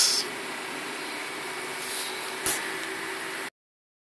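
Steady room noise with a faint hum. A brief hiss comes at the start and a single click about two and a half seconds in. The sound cuts off to silence about three and a half seconds in, as the recording ends.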